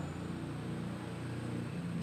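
A pause in speech with only a steady low hum and faint room noise, as from a microphone and sound system left open.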